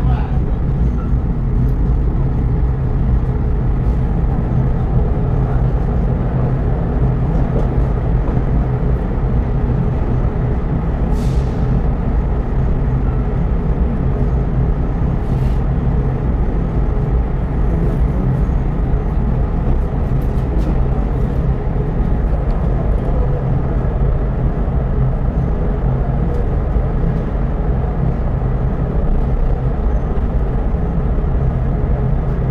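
Diesel train's engine running with a steady low hum and rumble as the train rolls slowly into the station.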